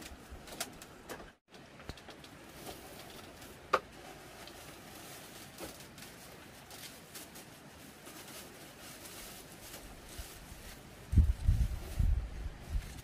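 Quiet ambience with faint rustling of plastic bags being handled and a bird cooing in the background, a single sharp click about four seconds in, and a run of heavy low thumps near the end.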